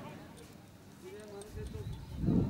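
Faint voices talking, with low muffled thuds building up near the end.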